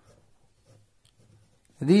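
Pen writing on notebook paper, a faint sound of short strokes.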